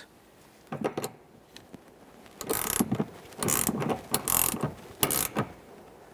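Ratcheting box-end wrench clicking as it snugs the nylon-insert locking nut down the rear shock absorber's upper shaft: a couple of faint strokes first, then four louder runs of clicks, each shorter than half a second and less than a second apart.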